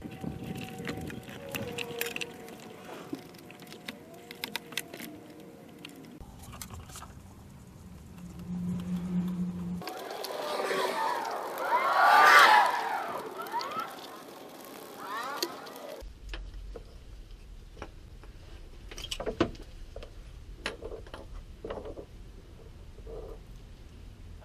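Hand tools working on the thermostat housing bolts: scattered sharp clicks and knocks of a ratchet and metal parts, heard across several short cuts. In the middle there is a louder stretch of wavering, gliding tones.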